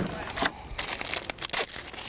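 Crinkling handling noise with a quick run of small clicks and snaps over a faint hiss.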